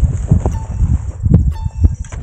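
Footsteps and rustling of people striding through tall dry grass, heard as irregular low thuds every few tenths of a second.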